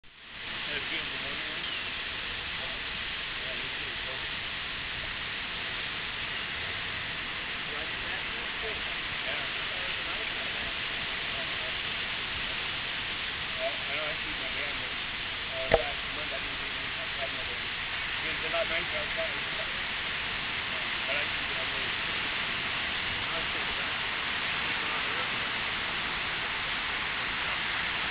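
Steady wash of ocean surf and wind on the microphone, with faint distant voices and a single sharp click a little past halfway.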